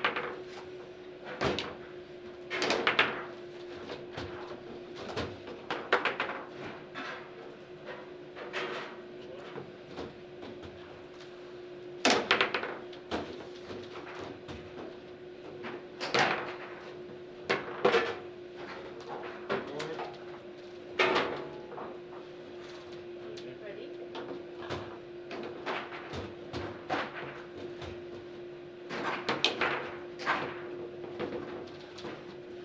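Table football in play: irregular sharp clacks and knocks as the ball is struck by the players' figures and the rods slide and bang, some knocks much louder than others. A steady hum runs underneath.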